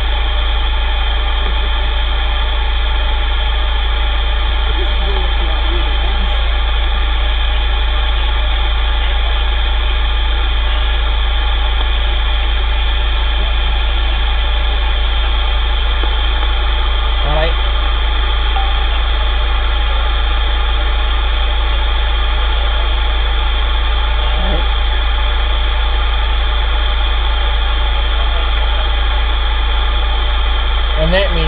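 CB radio receiver on a quiet channel: a steady hiss of band noise with a loud low hum and several steady tones. Faint snatches of distant voices come through briefly twice in the second half.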